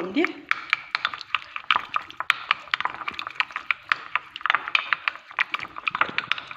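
A spoon stirring and mashing a thick tomato-paste, oil and soft-cheese mixture in a small ceramic bowl, clicking and scraping against the bowl in rapid, irregular strokes.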